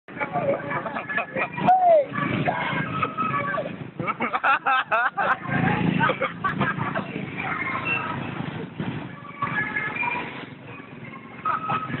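People's voices talking and calling out over street traffic noise.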